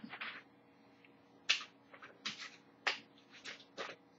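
Paper being handled: a scatter of short, faint rustles and crackles, about six separate ones over the few seconds.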